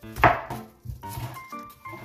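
Kitchen knife chopping green onions on a wooden cutting board: one loud chop about a quarter second in, then a few lighter knocks of the blade on the board.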